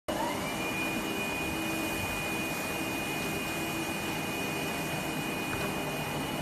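Machinery of a HAIDA HD1100L servo-motor injection molding machine running: a steady whirring with a high motor whine that rises in pitch over the first half second and then holds.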